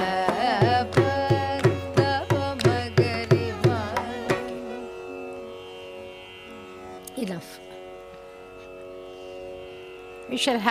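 A woman singing a Carnatic vocal exercise over a tambura drone, in time with a steady beat of about three strokes a second. The singing and beat stop about four seconds in, leaving the drone alone, with one short falling vocal slide near the end.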